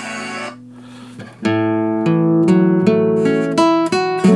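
Nylon-string classical guitar, played while working out a song's chords by ear. A chord rings and fades, then about a second and a half in a new chord is struck, followed by a line of picked notes and another chord near the end.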